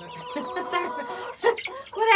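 Young chickens clucking in a brooder, with a short louder call about one and a half seconds in.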